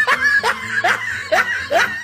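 Laughter: a string of short laughs, each rising in pitch, coming about two to three times a second.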